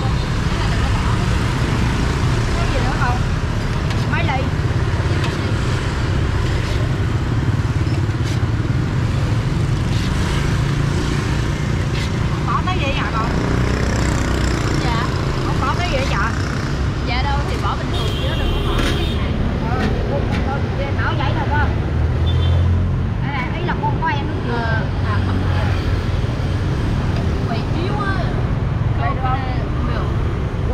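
Steady road traffic of motorbikes and cars passing on a busy city street, with voices talking close by.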